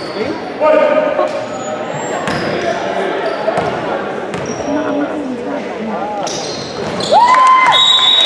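A basketball bouncing a few times on a hardwood gym floor as a player dribbles at the free-throw line, with voices echoing in the hall. Near the end a loud held call rings out.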